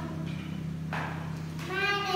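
A steady low electrical hum through a pause, then near the end a young girl's drawn-out, high-pitched vocal sound, a hesitant "um" as she thinks of what to say.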